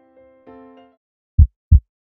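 Heartbeat sound effect: a double 'lub-dub' pair of deep thumps about a second and a half in, which are the loudest sound. Before them, soft electronic keyboard notes fade out.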